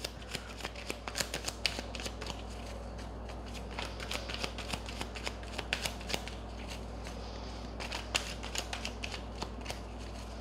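A deck of tarot cards being shuffled by hand: a continuous run of light, irregular card clicks and flutters.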